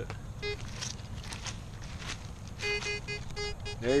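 Metal detector beeping as its coil passes over a dug hole: one short beep about half a second in, then a quick run of about eight short beeps at the same pitch near the end. The tone signals metal in the dirt, a piece of aluminum can.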